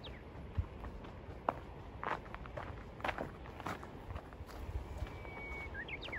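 Footsteps on a dirt trail, a light step every half second to a second. Near the end a Japanese bush warbler (uguisu) sings: a held whistle followed by a quick rising note.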